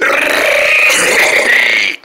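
A person's long, raspy screeching growl, imitating a bat in a paper-puppet play; it holds steady and cuts off abruptly at the end.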